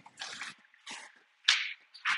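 Footsteps on paper floor-protection sheets: about four crinkling steps, the loudest one near the end.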